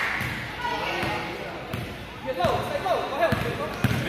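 Basketball bouncing on a gym floor as a player dribbles, a series of sharp bounces with the loudest near the end, under voices in an echoing gym.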